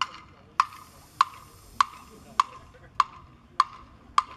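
A steady percussion click keeping a marching band's tempo: one sharp, slightly ringing tick about every 0.6 seconds (roughly 100 a minute), seven in all.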